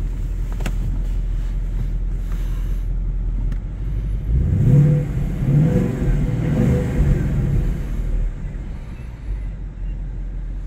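Ford Mustang GT's 5.0-litre V8, heard from inside the cabin, idling steadily, then revved three times in quick succession about halfway through before dropping back to idle.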